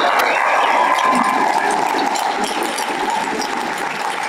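Audience applauding and cheering, a dense patter of claps with voices calling out, slowly easing off.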